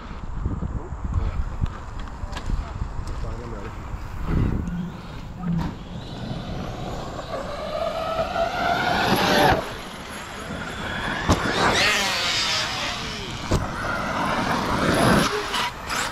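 Electric motors of several large 8S RC monster trucks whining as the trucks accelerate down a dirt track, the whine rising in pitch and cutting off as the throttle is let go, three times over, the longest rise about six seconds in, over low wind rumble on the microphone.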